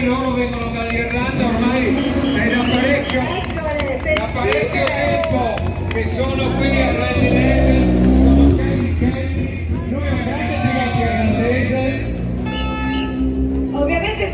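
A rally car's engine revs as it drives past close by, rising and falling about seven to eight seconds in, the loudest sound here. Under it runs amplified announcer speech and crowd chatter.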